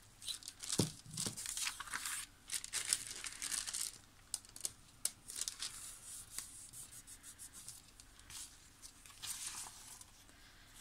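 Sheets of printed book paper torn by hand in a run of quick rips over the first few seconds, followed by lighter, scattered rustling as the torn pieces are handled and laid down.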